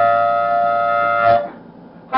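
Hohner Blues Band diatonic harmonica in C holding one long, steady note that stops about one and a half seconds in.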